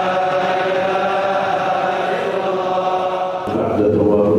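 Congregation of men chanting dhikr together in unison, one long held note that moves to a new pitch about three and a half seconds in.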